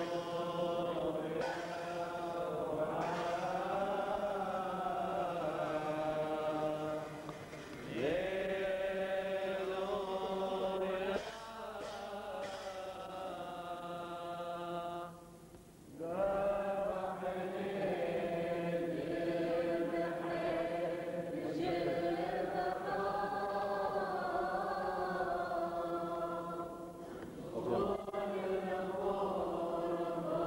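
Men's voices chanting a Syriac liturgical hymn together, in long sustained phrases with short breaks between them. A few light metallic clashes come from hand cymbals.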